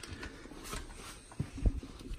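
Faint shuffling handling noise, with two short knocks in quick succession in the second half, as a person moves about and handles heavy parts.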